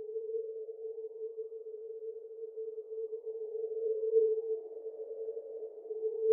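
A single sustained electronic tone, held at one mid-low pitch, with a faint wavering haze around it: a synthesizer drone closing the track. It swells a little partway through.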